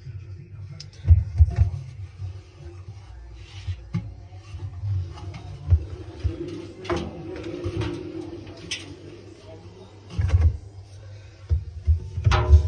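Irregular dull thumps and knocks of handling noise as a phone is moved about inside a stainless steel washing-machine drum.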